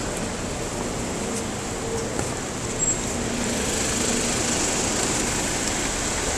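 Motorcycle running at low speed: a steady rush of engine and road noise with a faint, uneven engine hum.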